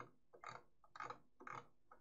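Near silence broken by about four faint, short clicks roughly half a second apart, from a computer mouse's scroll wheel turning a document page.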